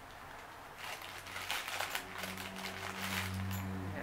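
Crinkling and rustling of a small bag or wrapping being handled as a pendant is taken out of it, starting about a second in, with a low steady hum beneath it in the second half.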